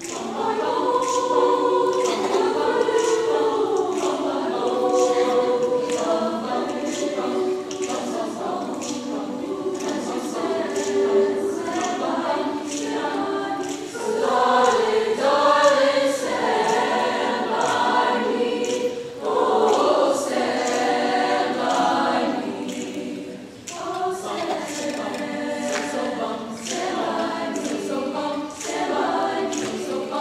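A large high-school choir singing a piece in several parts, beginning right at the start and swelling and easing between phrases.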